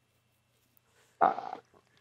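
Near silence, then about a second in a man's short, hesitant "uh".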